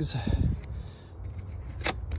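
Spring-loaded metal barrel bolt latch on a wooden coop door being worked by hand, with one sharp click near the end.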